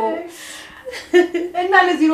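Speech only: a woman talking.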